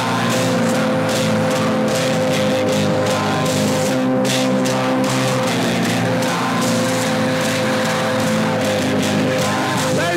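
Loud rock music with sustained guitar chords over a steady drum beat.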